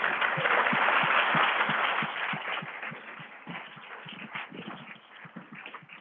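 Audience applauding, fullest in the first two seconds and then dying away to a few scattered claps.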